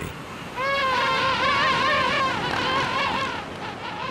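A single long, wavering animal call with a clear pitch, starting just under a second in and lasting about two and a half seconds, over a steady background hiss.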